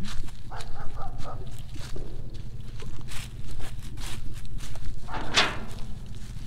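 Footsteps on leaf-covered ground with a steady low rumble underneath. A louder scraping rustle comes about five seconds in.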